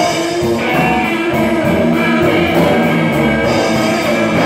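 Live rock band playing: electric guitars, bass guitar and drum kit, with a steady cymbal beat.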